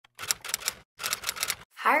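Typing sound effect: two quick runs of key clicks with a short pause between them.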